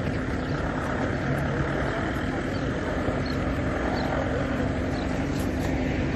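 A vehicle engine running steadily, a constant low hum under a continuous outdoor din.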